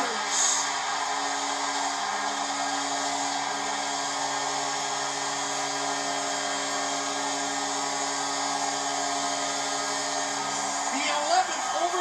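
NHL arena goal horn sounding one long held blast for about eleven seconds over a cheering crowd, signalling the home Canucks' overtime winning goal; heard through a television speaker.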